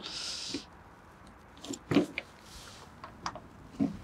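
Body access panel over the air intake of a compact multi-purpose tractor being unlatched and pulled open by hand: a few light clicks and knocks, the loudest about two seconds in.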